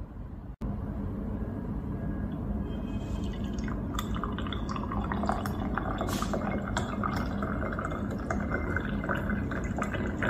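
Coffee poured from a glass French press into a small glass tumbler: a thin stream splashing into the liquid from about four seconds in, its note rising as the glass fills.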